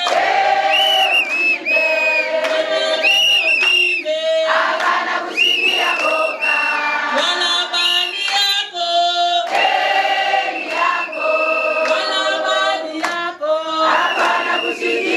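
A crowd of women singing together unaccompanied, many voices holding long notes in chorus.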